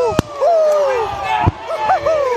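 A man shouting in celebration close to a body-worn microphone, in long falling cries. A sharp knock sounds just after the start and another about a second and a half in.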